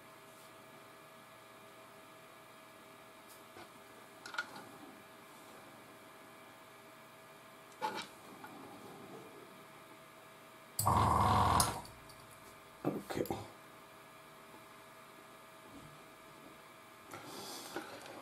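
Quiet room tone with a faint steady hum, broken by a few light clicks and taps of small hand work with metal tweezers on a plastic model. A little past the middle comes one loud rushing noise lasting about a second, followed by a couple of short knocks.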